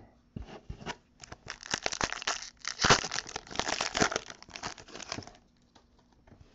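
A foil trading-card pack wrapper being torn open and crinkled: a run of quick crackling rustles that starts about half a second in, is loudest in the middle and stops about a second before the end.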